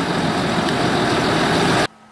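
Land Rover Discovery 3's 2.7-litre V6 diesel idling steadily, running after a jump start from a completely flat battery; the sound stops suddenly near the end.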